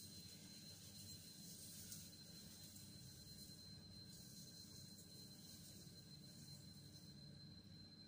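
Near silence, with a faint hiss of granulated sugar pouring from a glass bowl onto chopped apples, dying away about four seconds in.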